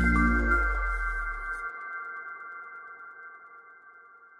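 Electronic logo sting: a deep bass boom dying away over the first second and a half, under several high chime-like tones held together that slowly fade out.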